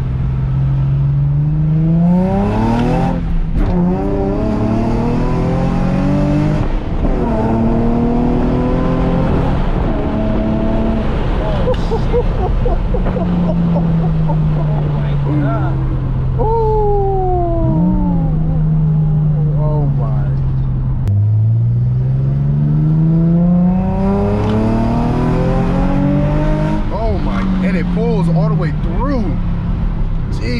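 Nissan 350Z's 3.5-litre V6, freshly tuned, heard from inside the cabin pulling through the gears of its manual gearbox: the pitch climbs and drops back at each upshift, falls slowly as it eases off around the middle, then climbs again near the end.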